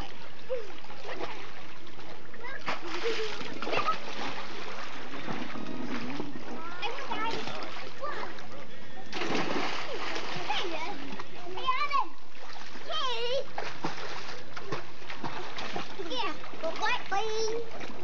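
Water splashing continuously as children play in a swimming pool, mixed with children's high voices calling out.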